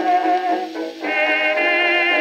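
1926 dance-band recording played from a 78 rpm disc, instrumental with no singing. The sound is thin, with no deep bass. Held chords dip briefly, and a new, higher phrase comes in about a second in.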